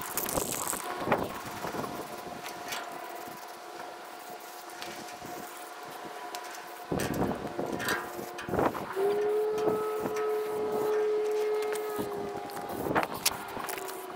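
An aerosol spray-paint can spraying the trailer's safety chains: a steady hiss that starts about halfway through and runs for several seconds. Light clinks of the chain and can come before it.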